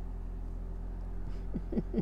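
A low steady hum, then, about one and a half seconds in, a woman starts laughing in quick, short laughs that each fall in pitch.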